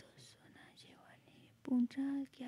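Soft whispered speech, then a voice begins speaking aloud near the end.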